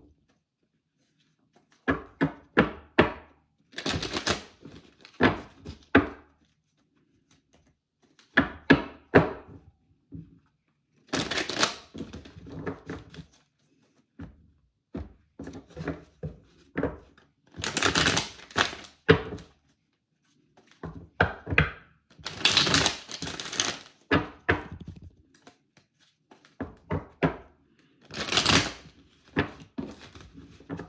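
A tarot deck being shuffled by hand: repeated bursts of cards riffling and clicking against each other, with short pauses between bursts.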